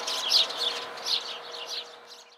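Songbirds chirping outdoors: short high chirps repeating about three times a second, growing fainter near the end.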